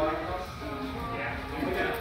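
Indistinct background talking by several people, with no clear mechanical sound standing out.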